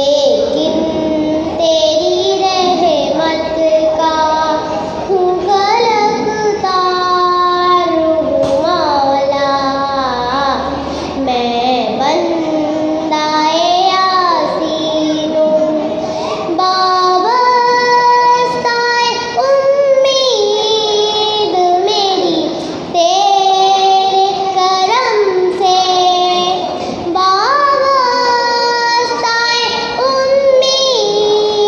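A young girl singing a naat, an Islamic devotional poem in praise of the Prophet, solo into a microphone with no instruments. She holds long notes and slides between them with ornamented turns, pausing briefly for breath a few times.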